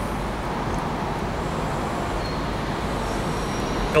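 Steady background rumble and hiss with no distinct events.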